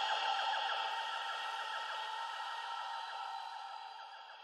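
Fading outro of a psytrance track: with the kick and bass gone, a thin synth texture of rapid, repeated small blips trails off, growing steadily quieter.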